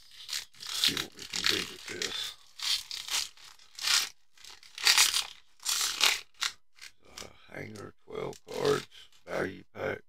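A 2023 Bowman baseball card pack's wrapper crinkling and rustling in the hands as it is torn open, in a run of sharp crackles. Near the end a low voice murmurs wordlessly.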